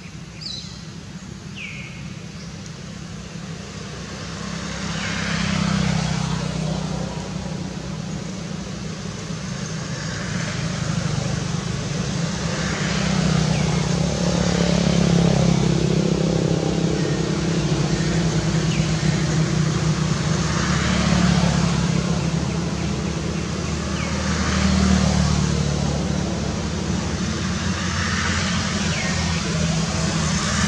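Motor vehicle traffic: a low engine rumble that swells and fades several times as vehicles pass, with a few short bird chirps near the start.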